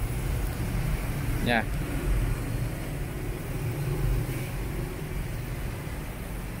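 Steady low hum and rumble of background noise, with no distinct events.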